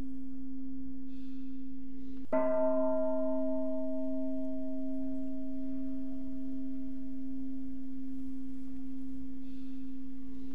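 A meditation bell struck once about two seconds in, ringing with several overtones and slowly fading over about six seconds, over a steady low hum.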